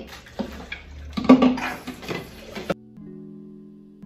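A run of knocks and clatters from plastic bottles and dishes being handled at a kitchen sink. These cut off abruptly a little more than halfway through, and background music with steady held notes takes over.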